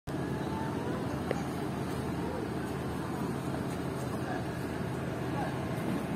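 Steady low rumble of idling vehicle engines, with faint distant voices.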